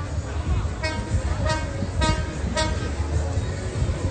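A horn sounding four short toots, a little over half a second apart, over background voices and a low rumble.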